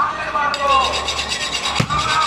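A butcher's knife rasping across a goat's rib rack in quick, even strokes on a wooden chopping block, with a heavy knock near the end.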